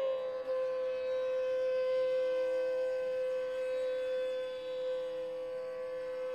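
Bansuri (bamboo flute) holding one long steady note in the slow alap of Raga Malkauns, sliding slightly down onto it at the start, over a faint drone.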